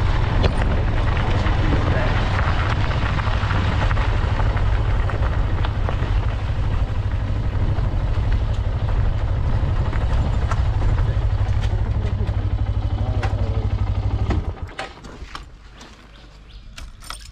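Motorcycle engine running steadily on the move, with wind rushing over the microphone. The sound drops away suddenly near the end as the bike comes to a stop.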